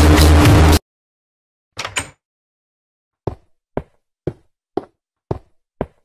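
Music cuts off under a second in. After a pause there are two quick taps, then six short, sharp knocks, evenly spaced at about two a second.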